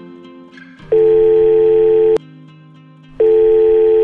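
Desk telephone ringing: two loud electronic rings, each a little over a second long and about a second apart, over quiet background music.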